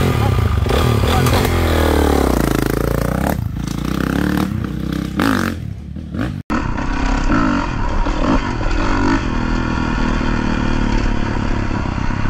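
Motocross bike engine running and being revved, its pitch rising and falling. After a brief break about six and a half seconds in, the engine runs on steadily as the bike is ridden.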